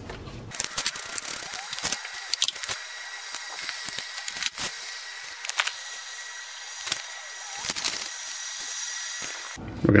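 Used engine oil draining from a Chevy Silverado's oil pan in a thin stream, splashing steadily into a foil drip pan of oil, with scattered clicks and drips.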